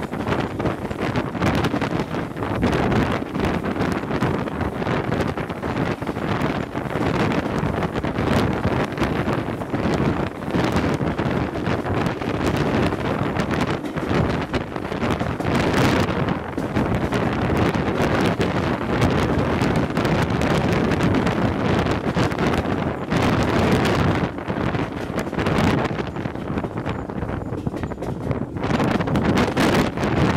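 Wind buffeting the microphone held out of the window of a moving steam-hauled passenger train, over the train's running noise on the rails.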